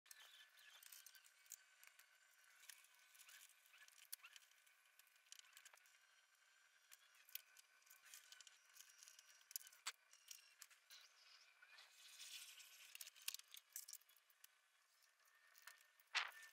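Near silence: a faint hiss with scattered faint clicks and taps.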